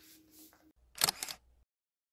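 A quick cluster of sharp clicks about a second in, like a camera shutter, then dead silence.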